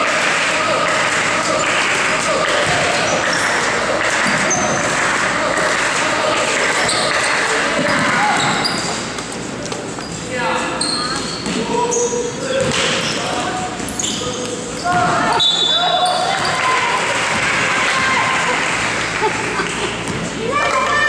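Basketball bouncing on a hardwood gym floor during play, among a steady hubbub of shouting players and spectators that echoes around the gymnasium.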